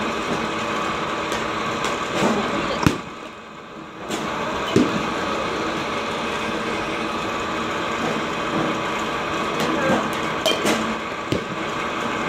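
Steady mechanical hum of batting-cage pitching machines running, with two sharp knocks about three and five seconds in.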